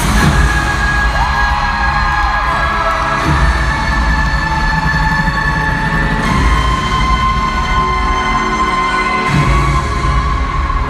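Loud intro music over a concert PA, with an arena crowd cheering and screaming over it.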